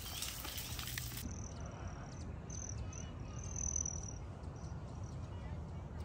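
Water trickling and splashing from a small rock-ledge waterfall into a pond, cut off abruptly about a second in. After it comes open-air garden ambience: short high-pitched chirps, one held longer in the middle, over a steady low rumble.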